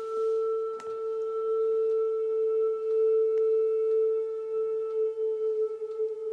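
Singing bowl ringing with one sustained, slowly wavering tone and fainter higher overtones. A faint click sounds about a second in.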